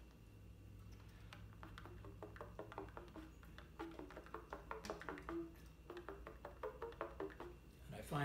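Trumpet played in super-soft 'pop tones': a string of short tongued notes at changing pitches, each starting with a quick, clean pop of the tongue. The notes are very soft, barely more than the pop and the pitch.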